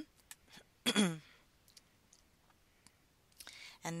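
A woman clearing her throat once, a short falling voiced sound about a second in, with a few faint, scattered computer mouse clicks around it.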